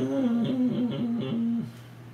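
A man humming a short tune of several stepped notes, which stops about one and a half seconds in.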